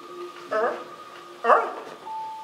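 A performer's voice giving two short dog-like yelps about a second apart, the second louder and more sudden.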